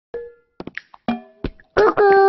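A handful of short cartoon pops and plucked notes, each dying away within a fraction of a second. Near the end a high-pitched cartoon reindeer's voice begins.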